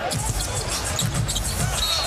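Basketball being dribbled on a hardwood court: a run of low thuds.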